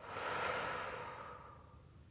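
A woman's deep breath out through the mouth, one breath that swells and then fades away over about a second and a half.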